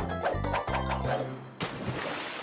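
Bouncy cartoon music with plucked notes and a bass line, cut off about one and a half seconds in by a sudden splash of someone jumping into a swimming pool, the water noise running on.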